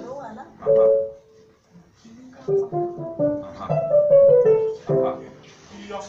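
Piano sounding a held chord, then a quick run of short notes climbing and falling back down: the cue pattern for a staccato vocal warm-up.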